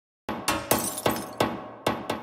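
Logo-intro sound effect of smashing impacts: about six sharp crashing hits in quick, uneven succession, each with a short ringing tail, starting about a quarter second in after silence.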